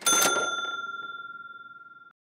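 A single bell-like chime sound effect: one ding struck at the start, ringing in a steady tone that fades away over about two seconds.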